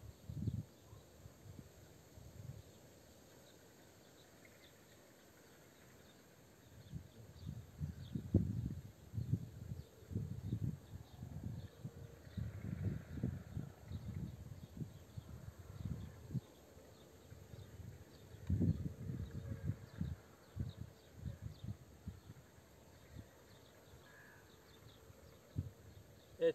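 Quiet outdoor background with faint, high insect chirps throughout. From about seven seconds in come irregular low rumbles of wind on the microphone.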